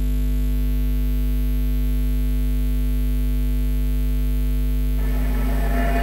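Contemporary chamber music with live electronics: a loud chord of perfectly steady electronic tones over a deep bass drone, held unchanged. About five seconds in, a crackling wash of noise comes in over it and builds.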